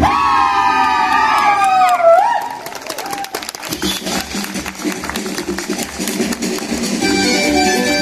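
Latin dance music ending on a long held note that slides downward, followed by audience applause and cheering. Music starts again near the end.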